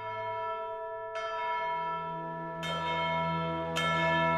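Bells ringing as outro music: long sustained ringing tones, with new strikes about one second in, about two and a half seconds in, and near the end.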